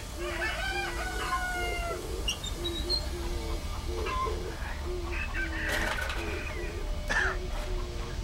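A rooster crowing: one long call of about a second and a half near the start, then shorter calls later on.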